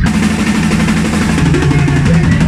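Live punk rock band playing loud, with the drum kit to the fore: busy drumming and cymbals over a bass line, with no vocals.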